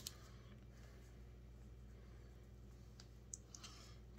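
Near silence with a steady low hum, broken by a light click at the start and a few faint ticks about three seconds in, from a pen writing on paper.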